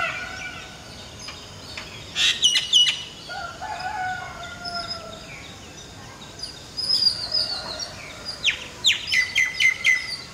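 Birds calling: a burst of short sharp calls about two seconds in, a longer, lower, slightly falling call after that, and a quick run of about six sharp notes near the end.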